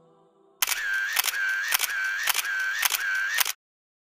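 A mechanical click-and-whirr repeating about twice a second, six clicks in all. It starts about half a second in and stops abruptly after about three seconds.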